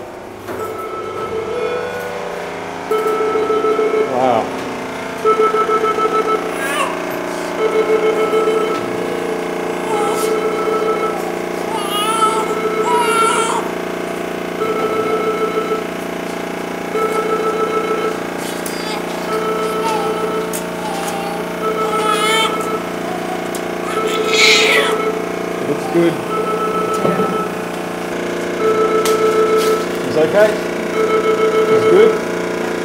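Newborn baby crying in the first minute after delivery by caesarean section: short, even wails that repeat roughly every two and a half seconds, each a breath apart. Steady equipment hum runs underneath.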